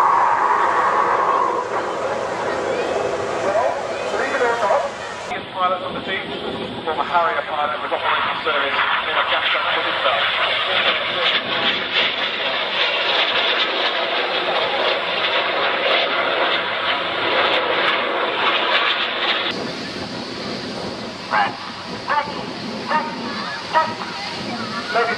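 Jet noise from the Red Arrows' BAE Hawk T1 trainers flying their display, heard as a steady rushing roar, mixed with the chatter of spectators.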